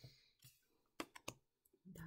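Faint clicks and taps of Lenormand cards being laid down on a tabletop, a few quick ones about a second in.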